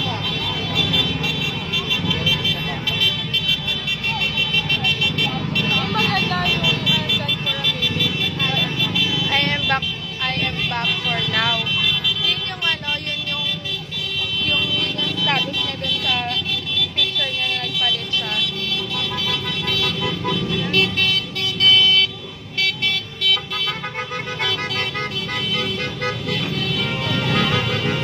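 Vehicle horns held and sounding together over a low engine rumble, with voices and calls mixed in.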